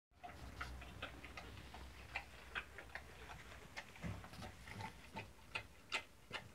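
Dog eating from a bowl: irregular sharp clicks and crunches, two or three a second.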